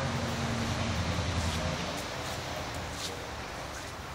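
Steady rain noise with a low hum underneath that fades about two seconds in.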